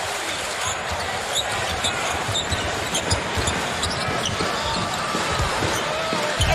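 Basketball being dribbled on a hardwood court amid steady arena crowd noise, with short, sharp, high squeaks scattered through the first four seconds.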